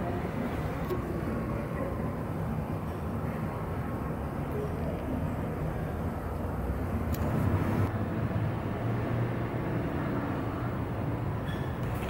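A domestic cat purring, a steady low rumble with no break.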